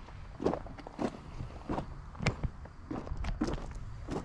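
Footsteps crunching on loose gravel at a steady walking pace, about six steps.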